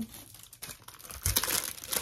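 Hands rustling and crinkling something light, starting about halfway through in a cluster of irregular crackles.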